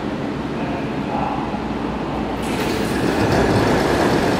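Airport people-mover train running into the platform and stopping, a steady rumble. About two and a half seconds in a loud hiss joins as the train and platform-screen doors slide open.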